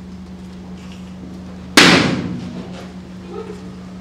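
A balloon bursting with a single loud bang a little under two seconds in, dying away over about a second, over a steady low hum.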